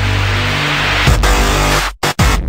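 Electronic intro music: a deep, sustained bass under a rising hiss, a new bass hit about a second in, then an abrupt cut just before the end.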